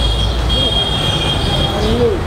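Steady outdoor background noise: a loud, even low rumble with a thin, high, steady whine running through it.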